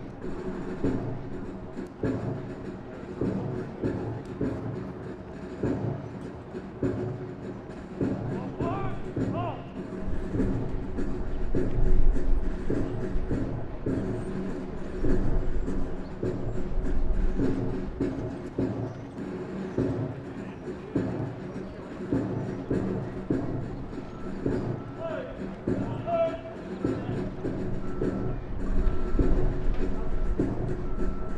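A flight of trainees marching in step, boots striking the pavement in a steady rhythm, over military march music with sustained tones. A shouted voice call rises above it about nine seconds in and again near the end.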